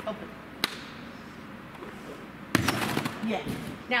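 A gymnast's feet striking a trampoline and a landing mat: a short burst of heavy thuds about two and a half seconds in, after a single sharp tap near the start.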